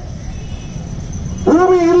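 A man's speech: a short pause with a low outdoor rumble, then about one and a half seconds in he starts a long, drawn-out word.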